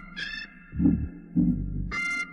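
Gospel organ playing a hymn: high sustained chords struck at the start and again near the end, over deep bass notes pulsing about twice a second.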